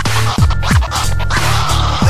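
Hip-hop instrumental with turntable scratching: quick falling sweeps repeating over a steady bass beat, with no rapping.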